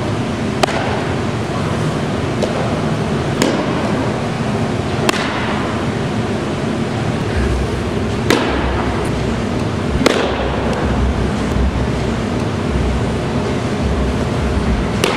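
A softball smacking into leather catcher's and fielder's gloves five times, a sharp pop every two to three seconds, the two near the middle and later the loudest, over a steady loud rushing background.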